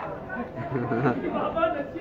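Indistinct chatter of several men's voices talking over one another, with no clear words.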